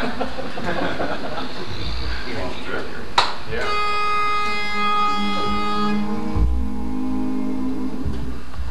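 Room chatter, then a click and a barbershop pitch pipe sounding one steady reedy note for about two and a half seconds to give the quartet its key. Low hummed notes from the singers come in under it as they take their starting pitches.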